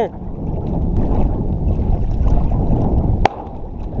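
Wind and choppy lake water lapping against a camera held just above the surface, with a single sharp crack about three seconds in: a distant shotgun shot at an incoming duck.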